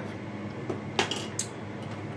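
Kitchenware clinking against a glass measuring cup: a few light knocks, the sharpest about a second in.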